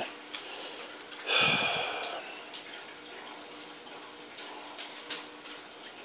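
A dog snuffling at kibble on a wooden floor: a few scattered faint clicks and crunches, with one short breathy huff about a second and a half in.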